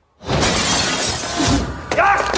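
Glass shattering, a film-trailer sound effect: a sudden loud crash out of near silence about a fifth of a second in, its noisy crashing lasting most of two seconds.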